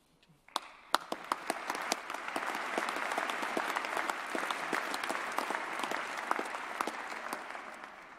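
Audience applauding, many people clapping. It starts about half a second in, builds quickly, holds steady, and dies away near the end.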